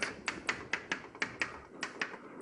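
Chalk tapping and clicking against a blackboard while writing: a quick, irregular run of sharp taps, several a second.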